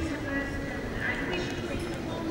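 Indistinct voices of people talking among themselves in a large conference hall, with a few light knocks and clatters.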